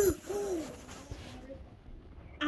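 A young child's voice making one short wordless 'ooh' that falls in pitch, a moment after a higher held note ends. After that there is only faint room sound.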